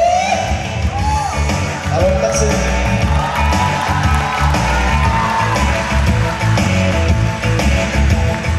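A man singing the last notes of a song into a microphone, his voice gliding and then holding a long note, over a band accompaniment with a steady beat that plays on as the song closes.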